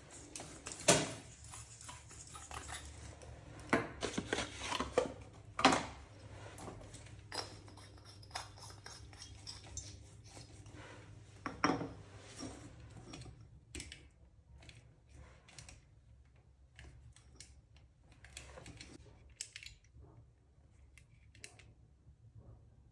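Scattered clicks and light knocks of hands at work: a glass light bulb being unscrewed from and screwed into its lamp holder, and a wall dimmer switch and its wires picked up and set down on a countertop. A few sharper knocks fall in the first half, with sparser, quieter clicks after that.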